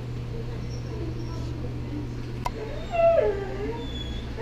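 A house cat meowing once, about three seconds in: a single drawn-out call that falls in pitch and then levels off. A short sharp click comes just before it.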